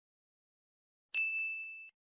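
A single bright chime: the end-card logo sting. It strikes about a second in after silence, holds one clear high tone with fainter overtones, and fades out just before the end.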